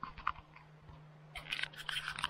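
Handling noise from a handheld camera: a couple of soft clicks, then a quick cluster of clicks and rustles near the end as the camera is turned around, over a faint steady hum.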